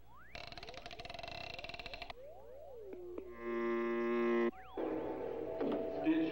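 Cartoon soundtrack music and sound effects: swooping tones that glide up and down, a dense buzzy passage in the first two seconds, a held chord from about three to four and a half seconds in, then fuller music near the end.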